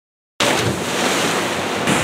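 Water rushing and splashing in a pool, cutting in suddenly about half a second in after dead silence.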